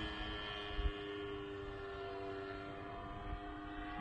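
O.S. Max .50 glow engine of a radio-controlled Extra 300S model plane in flight, a faint, steady drone from high overhead. The pilot thinks the engine is overheating.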